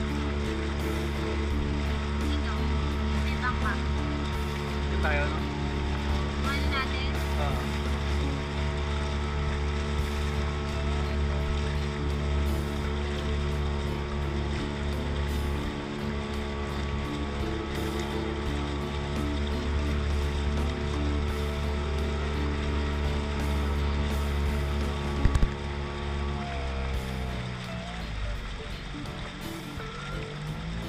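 Motorboat engine running at a steady speed with the rush of the wake, its pitch shifting and wavering about 27 seconds in.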